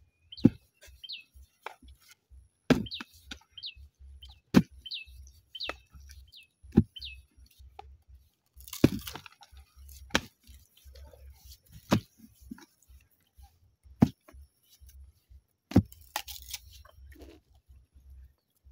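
A hand hoe chopping down into soil about every two seconds, nine sharp strikes in all, a few of them followed by a short scatter of loosened earth. A small bird chirps over and over through the first several seconds.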